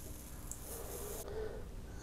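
Faint hiss of a small amount of water poured from a plastic measuring cup onto the egg cooker's hot stainless steel heating plate, ending a little over a second in.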